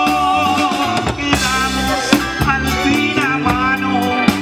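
Live band performing a romantic Mexican song: a man singing over electric bass and drum kit, with a cymbal crash about a second and a half in.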